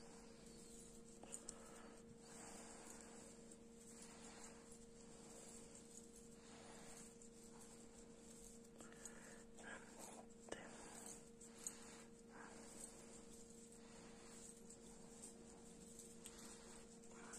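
Near silence over a steady low hum, with faint, scattered soft rustles and small ticks of a metal crochet hook working acrylic yarn in single crochet stitches.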